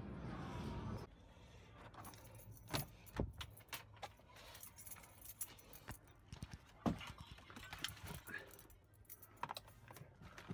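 Faint handling sounds inside a car: scattered sharp clicks and small rattles as things are moved about in the cabin. A soft steady hiss fills the first second.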